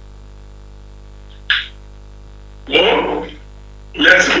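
Steady electrical mains hum, broken by a short hiss about a second and a half in and a brief spoken fragment near three seconds.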